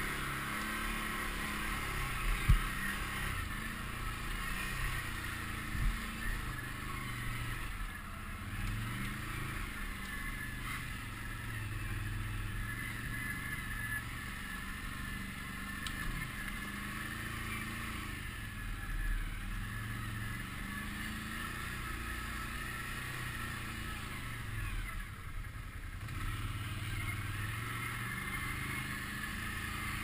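Can-Am Outlander 650 ATV's V-twin engine running at low trail speed, its pitch rising and falling with the throttle, with a sharp knock about two and a half seconds in and another near six seconds.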